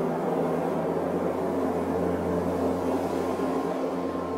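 Steady rushing noise of steam venting from a hydrothermal vent, with a low steady hum underneath.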